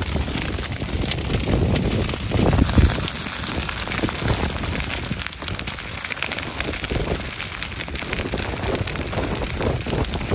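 Dry prairie grass burning in a prescribed fire: a dense, continuous crackling and popping of the flames, over a gusty low rumble of wind on the microphone.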